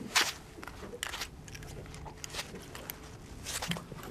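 Scattered clicks and rustles of hands handling a small gummy shark and working the hook and line free, with one sharp click just after the start, over a faint steady low hum.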